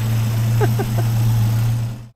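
Rover P4 engine idling with a steady low hum, running smoothly on newly fitted rubber spark plug boots that replaced old Bakelite caps, which the owner blamed for its misfiring.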